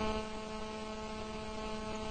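Steady electrical mains hum in the microphone and sound system: a low, even buzz made of a few fixed tones.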